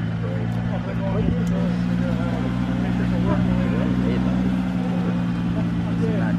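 A Nissan GT-R Nismo's twin-turbo V6 running at low speed as the car creeps by, a steady low engine drone with no revving.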